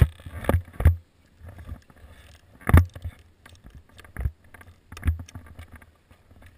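About half a dozen muffled thumps and knocks with rustling in between, from a body-worn action camera's microphone being bumped and rubbed as the rider moves about sitting in the snow. The sound cuts in suddenly on a loud thump, and the strongest knocks fall just before one second and near the three-second mark.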